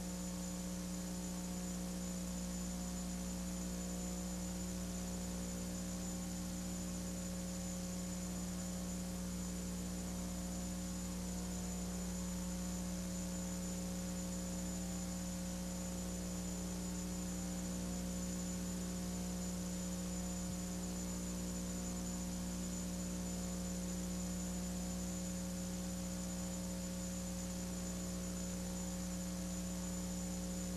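Steady electrical mains hum on an old recording, a low buzz with a thin high whine above it, holding unchanged throughout.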